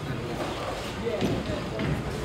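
Busy bowling alley: people talking in the background, with a couple of soft knocks.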